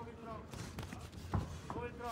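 Faint voices calling out around a boxing ring, with a few dull thuds from the boxers' gloves and footwork. The clearest thud comes about one and a half seconds in.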